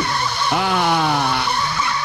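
Drum and bass breakdown in a DJ mix: a wavering held tone cuts off at the start, then a pitched synth sweep slides downward for about a second over a steady high tone, with no drums or bass.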